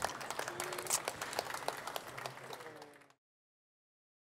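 Audience applause, a dense patter of hand claps fading out over about three seconds, then cut off to silence.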